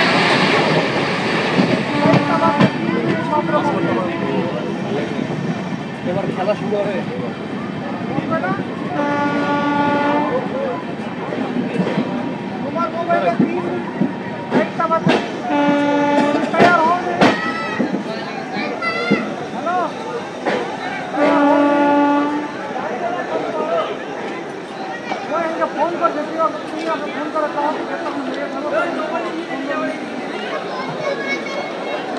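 Horn of the Amrit Bharat Express sounding four times, each blast lasting about a second and coming roughly every six to seven seconds. Underneath runs the clatter of the train rolling slowly along the platform.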